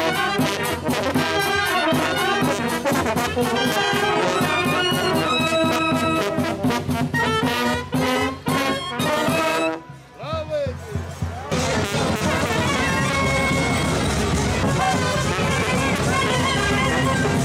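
Romanian fanfare brass band playing a lively tune: tenor horns, trumpets and clarinet over steady bass-drum beats. The music drops out briefly about ten seconds in, then carries on.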